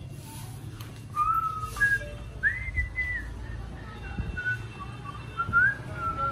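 A person whistling a tune: a single clear line of held notes with slides between them, starting about a second in.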